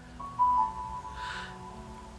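Soft background music with a few held notes, heard in a pause between spoken sentences.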